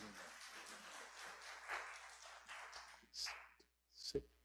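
Faint rustling and shuffling of people moving about, with a brief brighter hiss about three seconds in.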